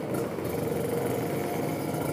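Kawasaki Ninja RR's two-stroke single-cylinder engine running steadily while riding, under a haze of wind and road noise.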